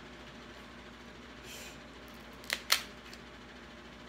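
King crab leg shell cracking as it is broken apart by hand: two sharp snaps about a quarter-second apart just past the middle, followed by a faint tick, over quiet room tone.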